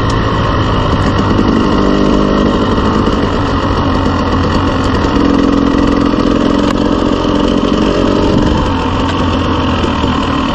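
Dirt bike engine running at steady part-throttle while riding a gravel trail at about 15 mph, its note lifting slightly about halfway through.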